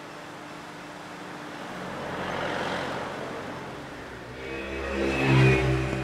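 Car sounds: a soft whoosh swells and fades about two to three seconds in, then a steady engine hum builds and grows louder near the end.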